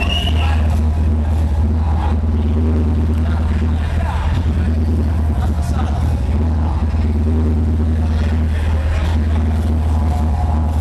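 Loud hardcore techno played through a club sound system, dominated by a steady, heavy bass, with voices over it.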